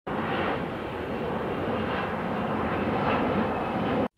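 Airplane engine noise: a steady rushing drone that cuts off suddenly at the end.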